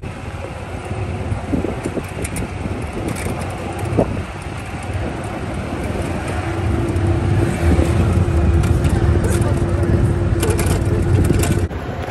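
Ride in an open golf cart: rumbling wind on the phone microphone and road noise, louder in the second half. A steady hum joins about halfway through, and the sound cuts off sharply just before the end.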